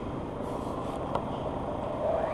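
Steady background noise with no clear tone, and a single faint click about a second in.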